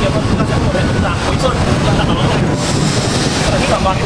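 Loud, steady low rumbling noise, with a faint voice underneath.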